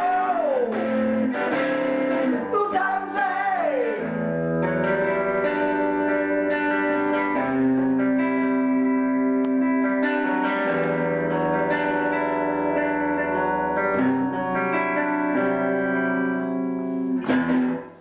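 A live song: a man sings to electric guitar accompaniment. From about four seconds in, long held guitar chords ring and change every few seconds, and the music drops away sharply near the end.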